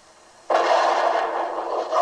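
A rifle shot rings out about half a second in, sudden and loud, followed by a steady rushing noise that fades only slowly.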